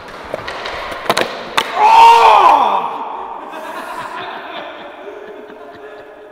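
Skateboard wheels rolling on a concrete floor, then two sharp board impacts about a second in, followed by a loud cry that falls in pitch as the trick goes wrong and the skater is hurt. Faint voices and echo trail off afterwards.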